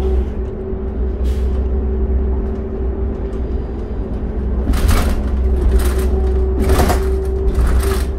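Interior of a 2006 New Flyer D40LF diesel transit bus under way: a steady low drone from the engine and drivetrain with a constant whine above it, sounding healthy. A few short hissing bursts come about five and seven seconds in.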